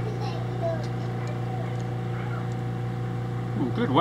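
A steady low hum with a row of even overtones, unchanging throughout; a voice begins near the end.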